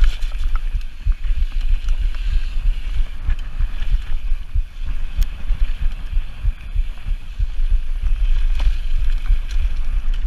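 Wind buffeting the chest-mounted action camera's microphone as a downhill mountain bike descends fast over a gravel trail, with tyres crunching on loose gravel and short rattling clicks from the bike.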